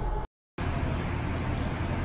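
Steady low background rumble, broken by a short dead-silent gap about a quarter second in where two clips are joined.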